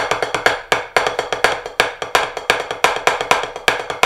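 Drumsticks playing a fast, even run of crisp strokes on a drum practice pad, about seven or eight hits a second.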